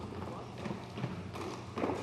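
Footsteps of hard-soled shoes on a hall floor: a few irregular knocks about twice a second over a low steady room hum.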